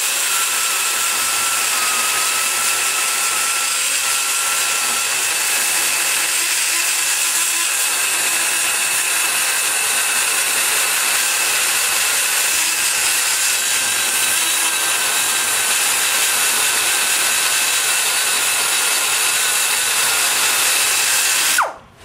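Die grinder with a long-shank bit running inside a small-block Chevy cylinder head's cast-iron exhaust port, grinding metal to blend the port trenches together. It makes a steady high whine whose pitch wavers slightly as the bit loads up, and it shuts off abruptly just before the end.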